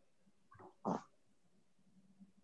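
Two brief throat noises from a meeting participant's open microphone, a faint one and then a louder, short one just before a second in, over an otherwise quiet line.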